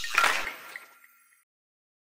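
The tail of a cartoon toilet-flush sound effect: a rushing water hiss with a few light chimes that fades out within the first second. Dead silence follows.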